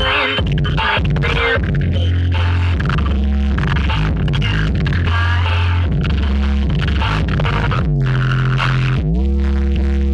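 Electronic DJ dance music played loud through a large carnival sound system stacked with subwoofers, with deep held bass notes; from about eight seconds in, a synth line slides up and down in pitch.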